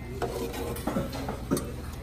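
A few light clinks and taps of tableware on a stainless-steel rice bowl, over a low steady background hum.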